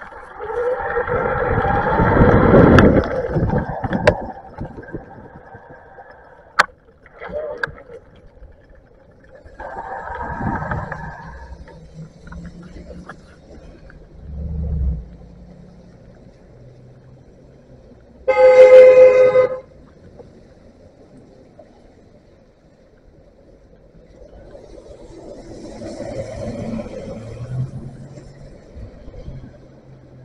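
Street traffic with a vehicle horn sounding: a horn for the first few seconds, a shorter one around ten seconds in, and a loud blast of about a second about two-thirds of the way through. A vehicle rumbles past near the end.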